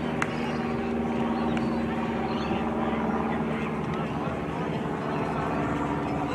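A steady droning tone with several overtones, holding one pitch throughout, under faint voices and shouts.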